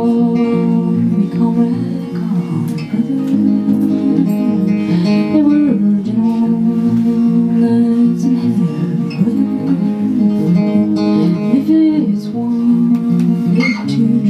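A woman singing a slow melody over her own acoustic guitar, played live.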